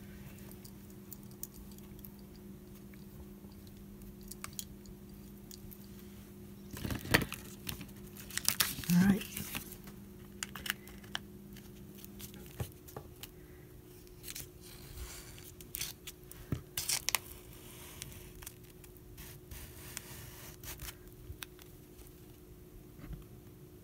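A plastic card dragged through acrylic paint across paper, scraping and rustling in scattered strokes, loudest about seven to ten seconds in. A steady low hum runs underneath.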